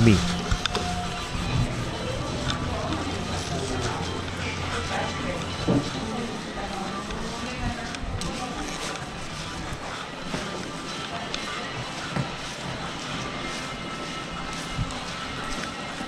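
Shopping-mall ambience: background music and voices with no clear words, with a short tone about a second in and a steady low hum over the first few seconds.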